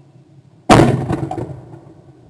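A single shotgun shot at a flying skeet clay, fired close to the microphone: one sharp, very loud report about three-quarters of a second in, ringing out and fading over about a second.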